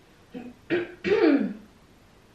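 A woman clearing her throat in a few quick rasps. The last and loudest ends in a voiced sound that falls in pitch.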